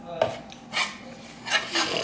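Metal slotted spatula scraping across a nonstick griddle as it is slid under a pancake and lifted. Three short scrapes, the last one longest.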